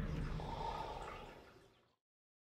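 The animated film's soundtrack dying away: a low rumble with faint higher ringing, the tail of a big boom, fading out to silence near the end.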